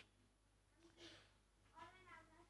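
Near silence: room tone, with two faint, distant pitched cries, one about a second in and one near the end.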